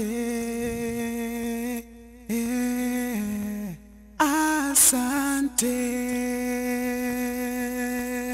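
A solo vocal line played back from a mixing session: three long held sung notes, flat in pitch with small steps between them, the vocal pitch-corrected with Auto-Tune.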